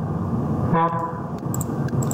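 A steady low background noise runs under one short spoken 'ha'. Near the end there are two faint clicks from a computer mouse selecting items in a dialog list.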